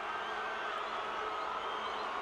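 Stadium crowd cheering a try, a steady roar with a few long, high held notes sounding over it.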